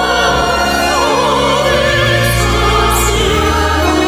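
Operatic soprano singing with wide vibrato over sustained low instrumental accompaniment, part of a classical-style opera score.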